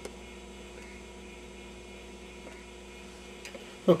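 Steady electrical mains hum, several even tones held at one level, with a few faint clicks near the end.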